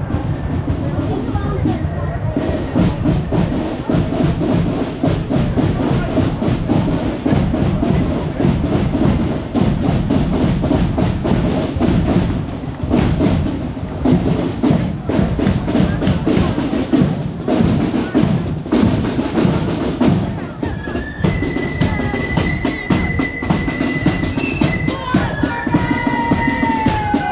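Marching band side drums and bass drum playing a steady, dense marching beat. High flute notes come in near the end.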